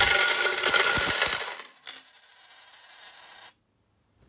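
A heap of coins pouring and clinking together, loud for about a second and a half, then one more short clink and a faint trailing jingle that dies away.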